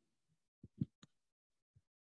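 A few faint, soft low thumps, two close together a little under a second in, followed by a short click about a second in and a fainter thump near the end.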